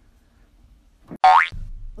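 A cartoon-style 'boing' sound effect: one short, loud twang rising quickly in pitch a little after a second in, followed by a low hum.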